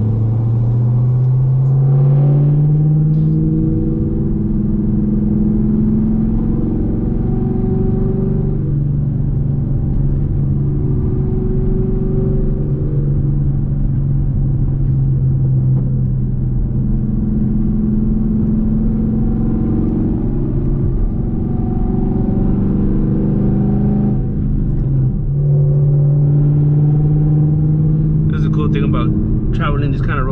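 Chevrolet Camaro with long-tube headers driving, heard from inside the cabin. The engine and exhaust note rises under acceleration over the first few seconds, then settles into a steady cruising drone, with brief lifts and pickups about halfway through and again later.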